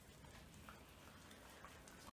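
Near silence with a few faint ticks: dogs nibbling kernels off a corn cob held out to them.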